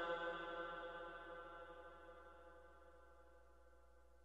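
The last note of a man's chanted Quran recitation dying away in a long echo, one steady pitch fading out over about two and a half seconds into near silence.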